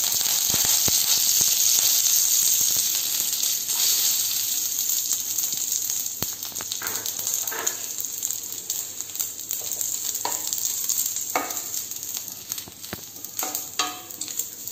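Hot oil tempering with mustard seeds and curry leaves sizzling, strongest for the first six seconds or so and then dying down. A few short knocks sound in the second half.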